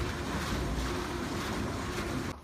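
Steady rushing noise with a low rumble, like wind buffeting a phone's microphone.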